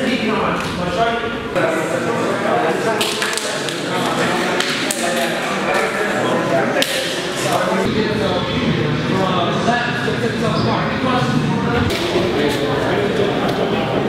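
Several people talking over one another, with a few sharp smacks now and then.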